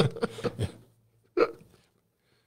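A man's laughter trailing off, followed by one short chuckle about a second and a half in.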